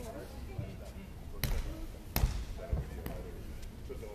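Two sharp slapping thuds about three-quarters of a second apart, with a fainter one about a second later, ringing a little in a large hall.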